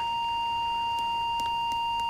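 A steady, high-pitched electronic tone, like a held sine-wave beep, sustained at one pitch throughout, with a few faint clicks.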